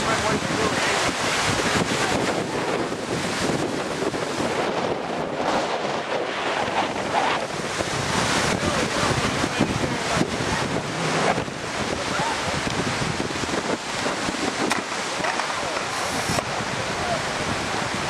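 Storm wind blowing steadily across the microphone, with choppy lake waves washing against the shore.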